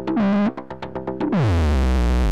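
A Reaktor Blocks synth sequence running through the Monarch filter with its feedback A pushed high. A short loud burst falls in pitch right at the start. About a second in, the pitch dives into a loud, gritty, sustained low drone as the filter feedback overloads.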